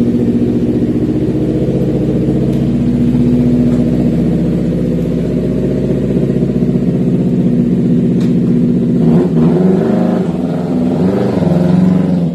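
Honda CBR250RR motorcycle with an Akrapovic racing exhaust running loud and steady at low revs as it rolls off. About nine seconds in, the pitch starts rising and falling with the throttle.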